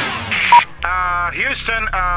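A single short electronic beep about halfway in, like the tone that opens a radio transmission. It is followed by a man's voice over the radio calling Houston.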